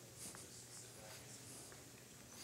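Near silence in a large room: faint hushed whispering and soft rustling from people praying quietly in small groups, over a faint steady low hum.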